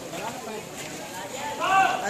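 People talking, with one voice loudest near the end.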